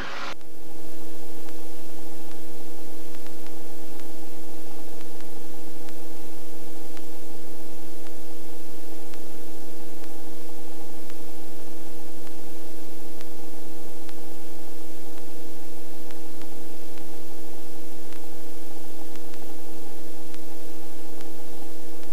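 Helicopter in flight heard inside the cabin: a steady hiss with a constant whine of several tones. It fades in over the first second, then holds level.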